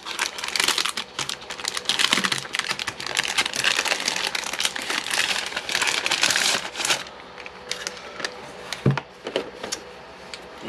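Clear plastic wrapping crinkling and crackling as a shrink-wrapped pack of cardboard player dashboards is opened and unwrapped. It goes on busily for about seven seconds, then turns quieter with a few light clicks and a single knock near the end.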